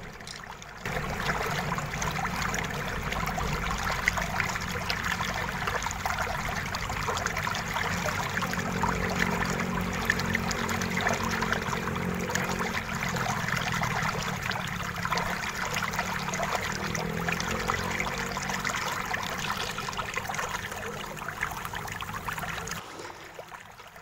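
Fast-forwarded sound of a screwdriver undoing the screws on a plastic laptop bottom case, with handling of the case: a dense, continuous crackle of small clicks and scrapes. It starts and stops abruptly.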